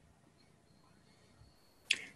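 Near silence: the gated audio of a video call, with a brief sharp click at the very end as the next speaker's voice comes in.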